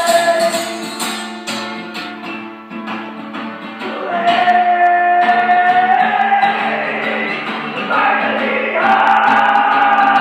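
Acoustic folk song performed live: a man sings long held notes over a strummed acoustic guitar. The music drops back after the first second or so, then swells louder about four seconds in and again near the end.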